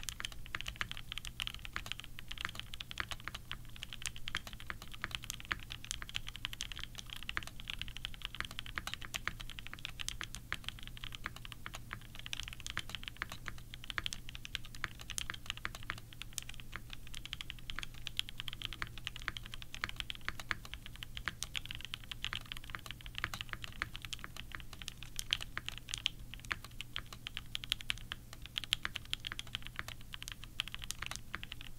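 Mode SixtyFive 65% custom mechanical keyboard with a copper bottom case, in its isolated top-mount configuration, being typed on continuously: a dense, irregular run of keystrokes, several a second.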